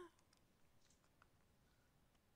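Near silence with a few faint, scattered clicks from a handheld correction-tape dispenser being picked up and pressed onto paper.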